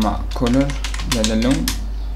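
Computer keyboard typing: a few quick keystroke clicks, partly under a voice, with a steady low hum underneath.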